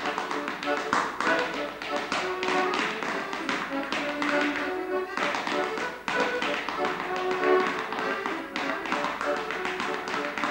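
A step dancer's shoes tapping rhythmically on a hard floor, over an accordion playing a dance tune. The accordion drops out for a moment about five seconds in, then carries on.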